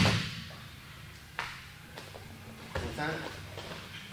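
A sharp, loud slap on a grappling mat as bodies and hands hit it, followed by a lighter knock about a second and a half later and a few faint knocks. A man says "all right" near the end.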